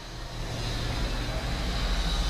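A low, steady motor rumble that grows a little louder over the two seconds.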